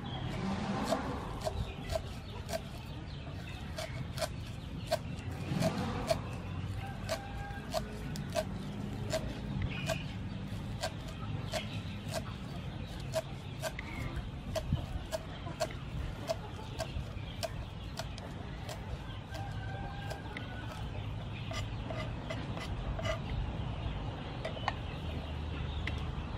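Kitchen knife chopping green onions on a thick wooden chopping board: quick, even knocks about two to three a second, each with a short hollow ring from the block. Birds call faintly in the background.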